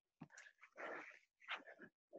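Faint, rapid heavy panting: short noisy breaths about every half second, broken by dead silence between them as the video-call audio gates.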